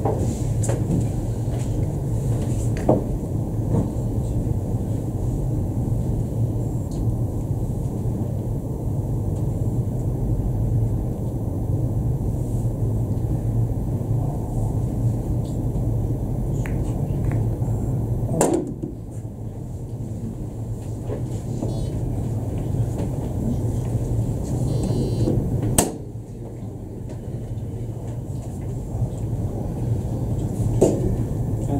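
Steady low rumble of room noise with two sharp clicks, one about two-thirds of the way in and one near the end; after each click the rumble drops a little in level.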